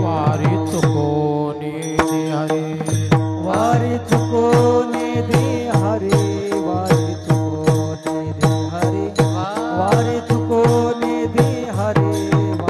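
Varkari kirtan bhajan: voices chanting over a steady drone, with small brass hand cymbals (taal) clashing in an even rhythm and a drum beating fast strokes whose low notes slide down in pitch.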